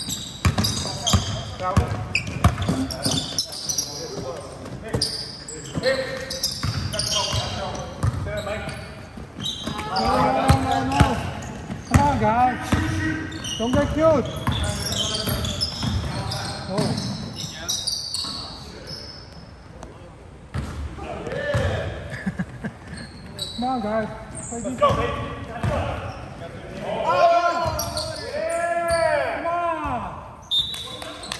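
Basketball game on a hardwood gym floor: the ball bouncing repeatedly, sneakers squeaking, and players shouting, echoing in the large gym. The shouting comes in two stretches, about ten seconds in and again near the end.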